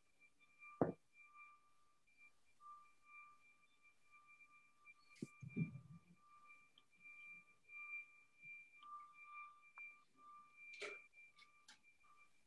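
Near silence: faint room tone with a thin, wavering high tone and a few soft clicks.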